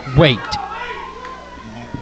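A man's commentary voice finishing a word, then the quieter sound of a small indoor wrestling crowd, with a faint, drawn-out, high-pitched voice from the audience for about a second.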